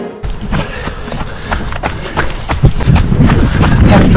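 A runner's footfalls on a muddy dirt trail, about two or three thuds a second, over a deep rumble of wind on the microphone. Background music cuts off abruptly at the start.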